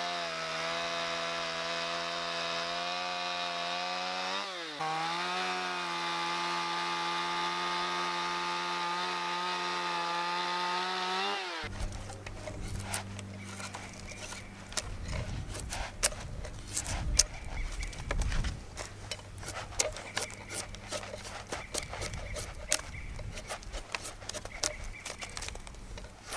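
Gas chainsaw running at a steady speed while trimming the sharp corners off a squared log, its pitch dipping briefly about five seconds in, then shutting off abruptly a little before halfway. After that, a drawknife shaving the log by hand: uneven scraping strokes with small clicks and knocks.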